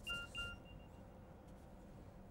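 Chalk squeaking on a blackboard while writing: two short, faint, high-pitched squeaks in the first half-second, fading away.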